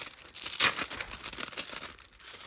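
A thin plastic packaging sleeve crinkling and rustling as it is handled and pulled open, loudest about half a second in. The packaging is one sold as better for the environment, and its sound is one the person handling it hates.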